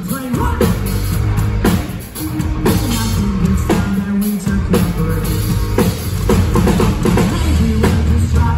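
Pop-punk band playing live through a festival PA: drum kit, distorted electric guitars and bass in a loud full-band passage, with a brief drop in level about two seconds in.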